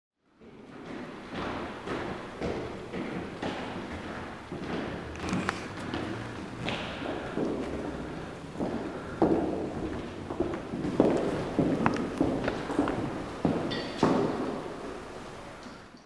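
Irregular thumps, knocks and footsteps on wooden floorboards in a large hall as people move about and handle instruments and gear; the knocks grow louder toward the middle and die away near the end.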